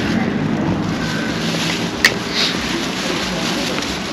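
Street background noise with a steady low engine hum and one sharp click about two seconds in.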